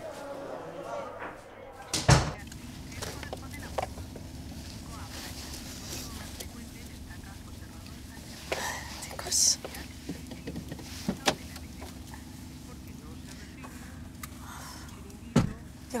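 A door bangs shut about two seconds in; then the steady low hum of a car interior in the rain, with car doors opening and a door shutting with a thud near the end.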